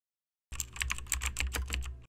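Computer keyboard typing sound effect: a fast run of key clicks, about eight a second, starting half a second in and stopping near the end.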